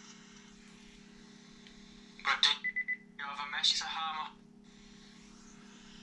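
Brief indistinct voice sounds about two seconds in, broken by a short electronic beep, over a steady low electrical hum.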